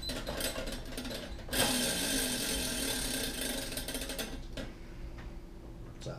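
Plastic spinner on a BeanBoozled tin lid being spun, its pointer clicking. The clicks run fast and get louder about a second and a half in, then slow and fade over the last couple of seconds.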